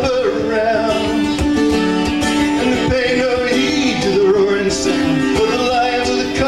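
Man singing with a strummed acoustic guitar.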